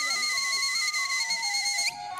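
Music: a high, pure-toned piping melody of held notes stepping downward, over a steady high tone that rises briefly and cuts off just before the end.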